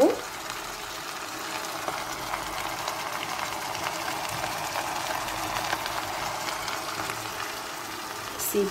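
Chopped vegetables cooking in an enamel pot on the stove: a steady sizzle with faint scattered crackles.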